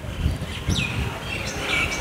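A few short bird chirps, quick rising and falling calls, over an uneven low rumble.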